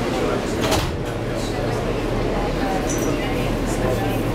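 New York City subway train running, heard from inside the car: a steady low hum and rumble, with passengers' voices in the background and a single clunk about three-quarters of a second in.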